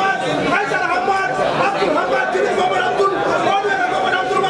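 Men talking, several voices overlapping at once, with no pause.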